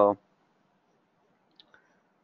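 A faint single computer mouse click about one and a half seconds in, against quiet room hiss, after a man's drawn-out 'uh' ends at the very start.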